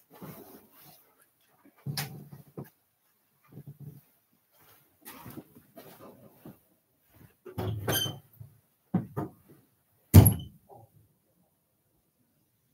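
Scattered off-camera bumps, knocks and rustling, with a loud thump about ten seconds in.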